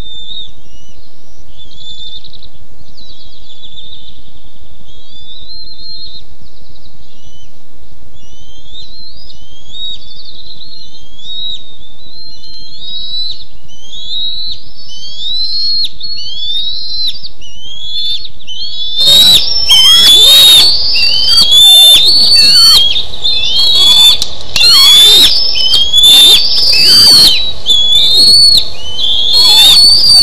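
Bald eaglets giving a long series of high-pitched chirping alarm calls, each note a short rising squeal repeated about once a second, warning off an intruding eagle. About two-thirds of the way in the calls turn much louder and harsher and come faster.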